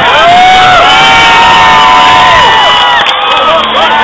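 Large crowd cheering and shouting, with many long held calls overlapping; the cheer breaks out suddenly and stays loud throughout, as a mass of paper airplanes is released overhead.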